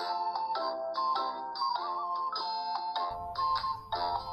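Background music: a light melody of short pitched notes, about three notes a second.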